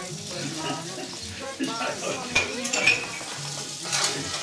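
Crockery and cutlery clinking at a kitchen counter, with a few sharp clinks and a laugh near the three-second mark, over soft background voices.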